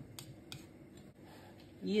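A few faint, light clicks of kitchen utensils being handled: a wire whisk and mixing bowls. Speech starts near the end.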